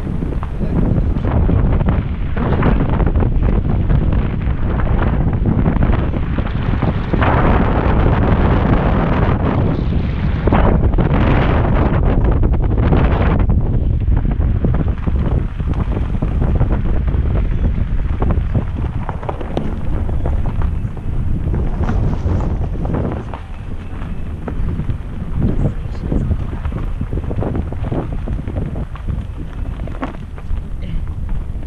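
Wind buffeting a microphone held outside a moving car's window, with the car's tyres crunching over a gravel road.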